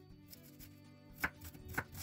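A kitchen knife chopping an onion on a wooden cutting board: a quiet first second, then several quick chops in the second half, over soft background music.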